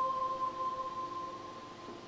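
Soundtrack music: a held tone with a second tone an octave below, slowly fading away.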